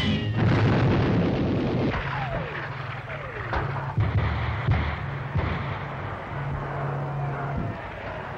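Newsreel soundtrack of music mixed with gunfire: a loud burst of noise at the start, then single sharp shots every second or so over a steady musical drone.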